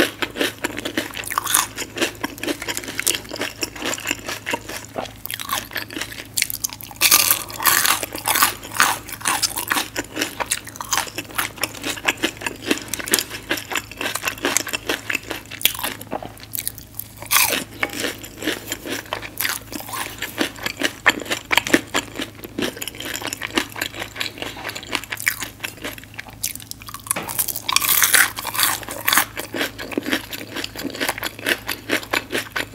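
Close-miked crunching and chewing of crispy fried tater-tot nuggets (Taco Bell Mexi Nuggets): dense crisp crackles, broken by a couple of short pauses, one about halfway and one near the end.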